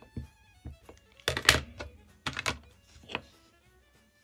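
An Archival Ink pad dabbed against a rubber stamp to ink it: three short taps about a second apart, over quiet background music with violin.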